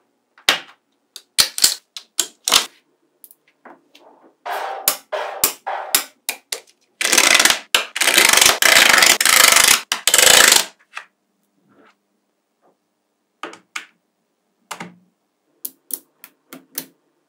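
Small magnetic balls snapping together in sharp separate clicks. Near the middle, a dense clattering run of about three seconds, as a layer of balls is slid off a clear plastic sheet and clicks down onto the block, then a few more scattered clicks.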